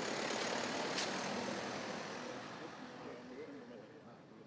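Road traffic noise from passing vehicles, fading out steadily, with one brief click about a second in.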